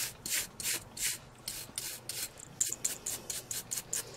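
Soft-bristled nail dust brush swept quickly back and forth over alcohol-sprayed natural fingernails. It makes a run of short swishes, about three or four a second, as the nails are brushed clean.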